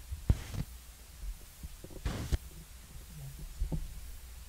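A sharp thump, then two brief rustles and a few soft low thuds, over a steady low rumble. It sounds like handling noise on a live microphone.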